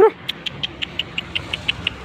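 A dog gives one short, sharp bark or yelp, followed by a quick, even run of light clicks, about six a second.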